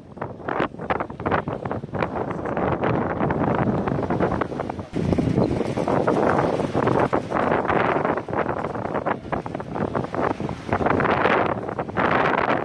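Wind buffeting the microphone in uneven gusts, growing louder about five seconds in.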